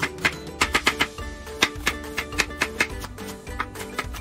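Background music with held notes, over a chef's knife dicing an onion on a wooden cutting board: quick, uneven knife strikes, a few a second.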